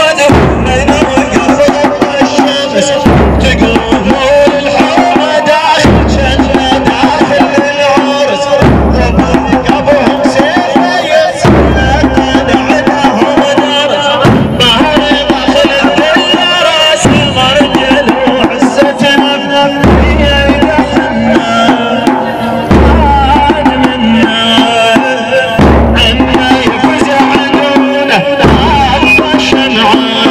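Arabic Shia devotional chant (latmiyya): voices chanting in a melody over a slow beat, with a deep thump about every three seconds.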